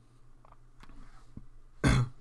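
A few faint computer-mouse clicks over a low steady hum, then one short, loud knock just before the end, likely a mouse or keyboard hit close to the microphone.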